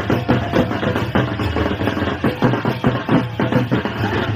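Folk drumming on a large two-headed barrel drum, beaten in a quick, steady rhythm of strokes.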